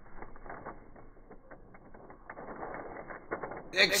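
Tissue paper crinkling and rustling as it is handled in a cardboard shoe box: a dense, irregular run of small crackles, sounding dull and muffled.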